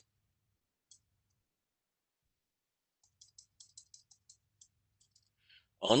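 Faint, quick clicks of a stylus tip tapping a tablet screen during handwriting: a single click about a second in, then about a dozen in a burst over two seconds near the end.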